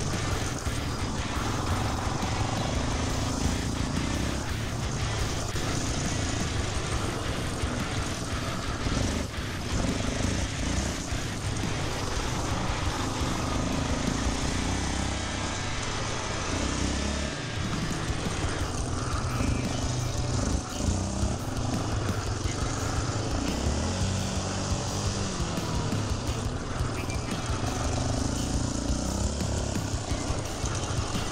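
ATV (quad) engine running under changing throttle as it laps a dirt track, its note rising and falling with the turns and straights.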